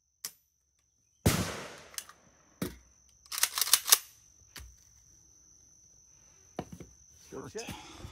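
One rifle shot from a 7.62×39 AK-pattern rifle (Hungarian AK-63DS), about a second in, with a short echo. A couple of seconds later comes a quick run of loud metallic clacks as the magazine is out and the action is worked to clear the rifle, followed by a few lighter knocks.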